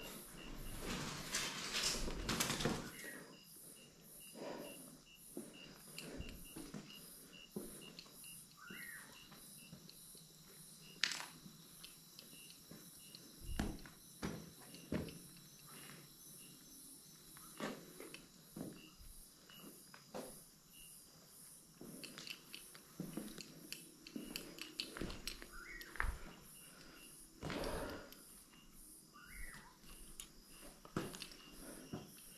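Slow footsteps and scattered small knocks and scuffs from someone moving through a quiet room, louder in the first few seconds, over a faint high pulsing chirp about twice a second.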